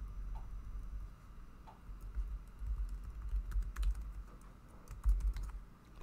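Typing on a computer keyboard: scattered, irregular keystrokes with a low rumble underneath.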